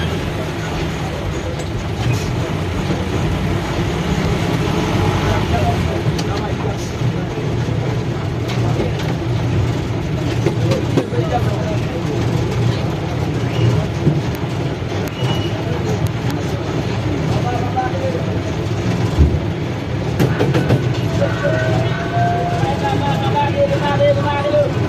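A bus or minibus engine running steadily at low speed, heard from inside the cab, with street voices and traffic around it.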